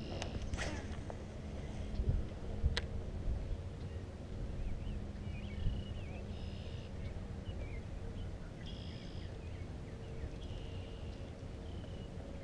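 Wind rumbling on the microphone, with a few sharp clicks in the first three seconds, then short bird calls repeating in the background every second or two.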